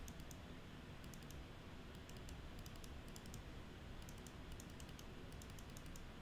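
Faint clicking of a computer keyboard and mouse, in small clusters of taps about once a second.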